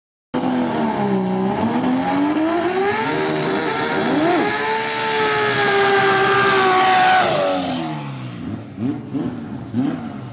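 Drag car's engine doing a burnout: revs swing up and down, then climb and are held high for a few seconds with the rear tyres spinning and squealing on the tarmac. Near three quarters of the way in the revs drop away, followed by a few short throttle blips.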